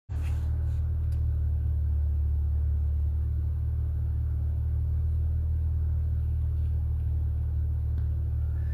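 Steady low rumble of a car engine running, heard from inside the cabin.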